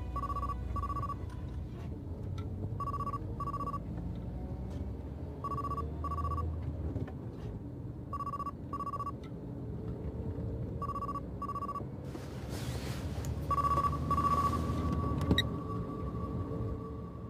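A telephone ringing in a double-ring pattern, two short electronic tones repeated about every three seconds, six times over a faint low music bed. Near the end a burst of hiss and a click come, after which a single steady tone holds.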